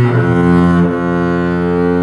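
Double bass played with the bow (arco): one note gives way about half a second in to a lower note that is held steadily.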